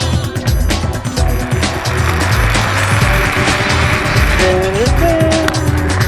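Zipline trolley pulleys running along a steel cable, a rushing whir that swells in the middle, over background music with a steady beat.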